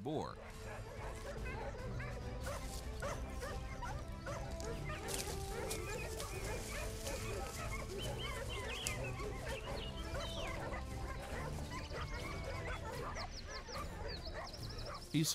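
Hunting dogs barking and yelping in short, scattered calls, over background music.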